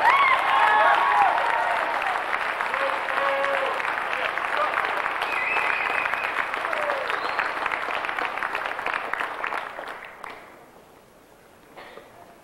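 Audience applauding, a dense steady clapping that dies away about ten seconds in.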